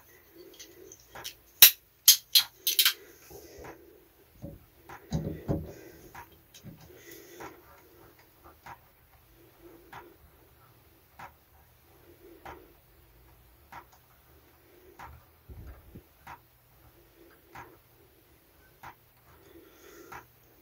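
Leatherman multitool working the small screw out of a brass bath-tap gland. A few sharp metal clicks come about two seconds in, then a long run of soft, regular clicks with a slight scrape as the tool is turned.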